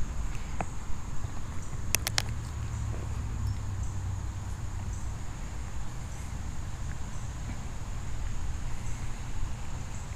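A steady high-pitched insect buzz over a low wind rumble on the microphone, with a few sharp clicks about two seconds in.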